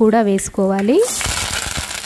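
A sudden loud sizzle about halfway through as chopped onion and curry leaves go into hot tempering oil with mustard seeds and dried red chillies, continuing as a steady sizzle.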